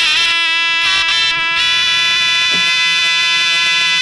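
Albanian folk music: surle shawms play a loud, sustained, reedy melody, with a single beat of a large double-headed drum about two and a half seconds in.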